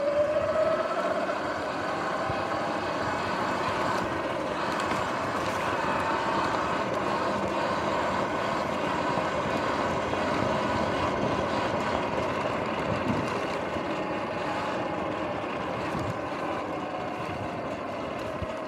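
Electric dirt bike's motor whining, rising in pitch as it accelerates in the first second, then holding a steady pitch, over a constant rush of tyre and wind noise on a dirt trail.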